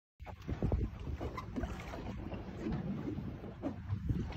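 Wind buffeting the microphone on a boat at sea, an uneven low rumble with water noise from the hull.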